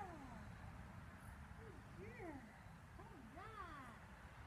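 Faint, short animal calls, several in a row, each rising and falling in pitch, over a low rumble of wind noise.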